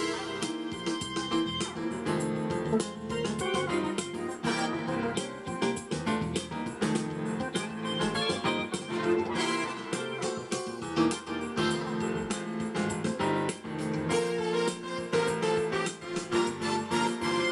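Yamaha digital keyboard playing a song at its regular tempo of 101, a dense, steady stream of notes.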